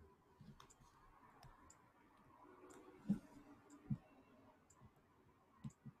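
Near silence: quiet room tone with faint sharp ticks about once a second and a few soft low knocks, two of them about three and four seconds in.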